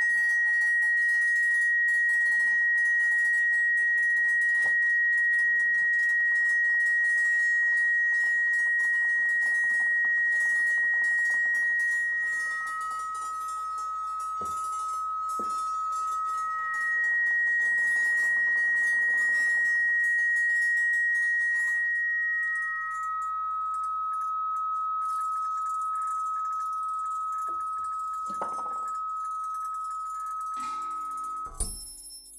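Sustained pure electronic tones from an experimental electro-acoustic improvisation: a steady high tone held until a little past two-thirds of the way through, joined by a slightly lower tone that enters before the midpoint, drops out, then returns and carries on to the end. Faint crackly texture and a few soft clicks sit underneath.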